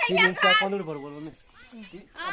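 Voices talking, the words not made out, with a child's voice among them.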